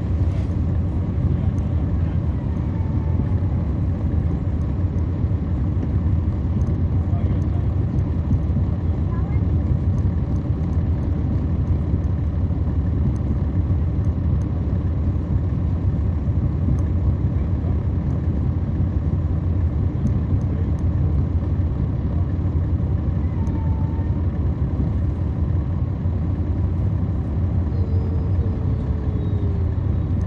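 Cummins ISL9 diesel engine of a 2010 NABI 40-SFW transit bus, heard from the rear of the passenger cabin, running with a steady low drone.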